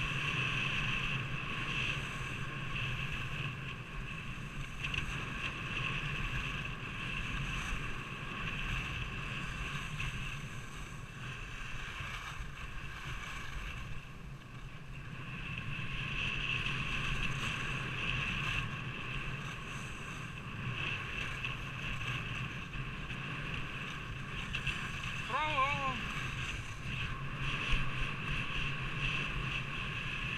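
Wind rushing over a moving action camera's microphone and skis hissing over packed snow during a downhill ski run, with a steady whine running through the noise. A brief, short pitched call sounds about 25 seconds in.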